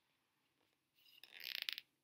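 Brief crackling rustle of a picture book's pages and cover being handled as the book is turned around. It starts about a second in and grows louder over under a second.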